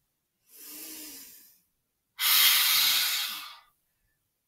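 A woman breathing deeply: a quieter inhale through the nose about half a second in, then a big, loud sigh out through the mouth lasting about a second and a half.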